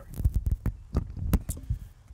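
Handling noise of a handheld camera being swung about: a low rumble with irregular sharp knocks and thumps, about seven of them over two seconds.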